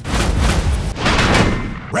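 Two loud explosion-like blasts of noise, each about a second long, one straight after the other.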